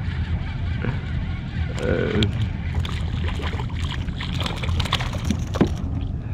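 A hooked speckled trout splashing at the surface as it is reeled up alongside a kayak, a run of sharp splashy crackles that thickens in the last seconds, over a steady low rumble.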